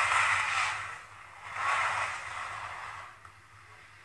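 Skis scraping on the slalom snow through the turns in two hissing swishes, the second shorter, then fading away, heard through a TV speaker.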